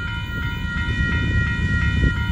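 Railroad crossing bell ringing steadily as its warning signals flash, over a low rumble from the approaching freight train.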